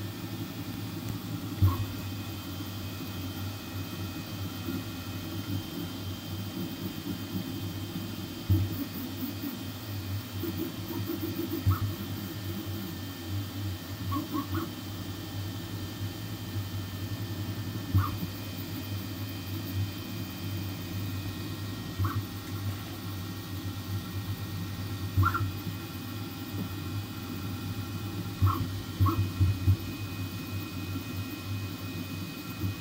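Flsun V400 delta 3D printer running mid-print: a steady hum of its motors and cooling fans, with short louder blips every few seconds.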